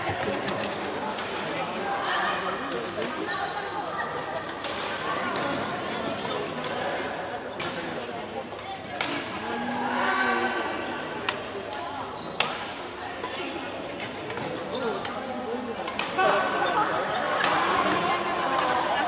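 Badminton rackets hitting shuttlecocks during doubles rallies: sharp cracks at irregular intervals, over indistinct voices of players.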